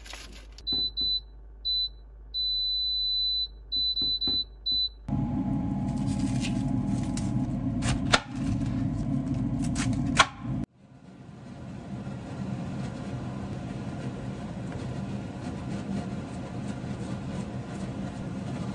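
An air fryer's control panel beeping as its temperature and timer are set: a string of short beeps and one longer beep at one high pitch. After that comes steady background noise with two sharp knocks.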